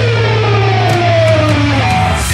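Distorted electric guitar holding a note whose pitch slides slowly downward, over a steady low note underneath.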